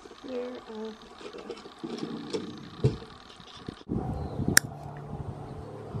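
Small objects shifted about in a drawer, with a faint voice, then a steady low hum with one sharp click about four and a half seconds in.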